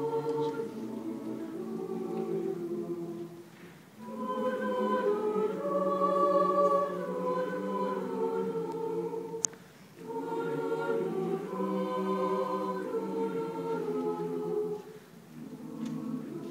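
High-school mixed choir of male and female voices singing held chords in phrases, with brief breaks between phrases about four, ten and fifteen seconds in. A single sharp click falls in the middle break.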